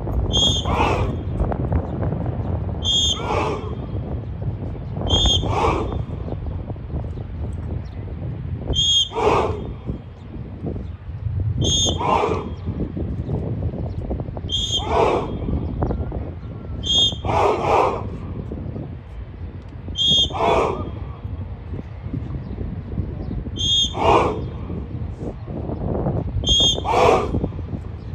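A whistle gives short double blasts about every two to four seconds. Each blast is answered at once by a loud unison shout (kiai) from a large group of martial-arts trainees striking together. This happens about ten times.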